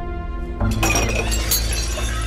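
Objects being smashed: two sharp shattering crashes, about a second in and again half a second later, over dramatic background music.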